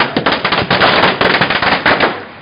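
A string of firecrackers packed into a burning effigy going off in a rapid, loud run of crackling bangs, many to the second.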